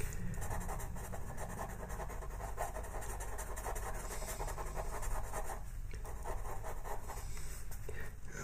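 Faber-Castell Pitt pastel pencil scratching on paper in quick, short strokes while an area is filled in with gray, with a brief break about six seconds in.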